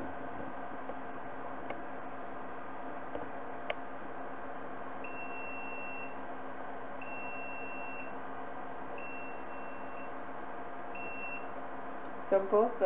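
Electronic beeping from an egg incubator's alarm: four steady high beeps, each about a second long, one every two seconds starting about five seconds in, over a constant background hum with a couple of light clicks early on.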